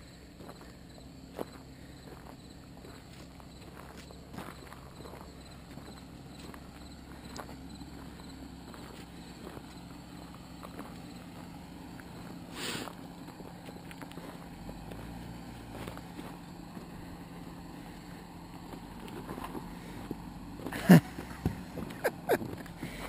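Jeep Wrangler engine running at a low, steady crawl as it climbs a rocky dirt trail, growing a little louder as it nears, with scattered crunches of stones and footsteps. A brief louder sound breaks in near the end.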